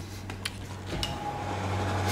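Steady low hum of a glass-door drinks fridge, with a few light clicks and knocks. A thin steady whine joins in about halfway through.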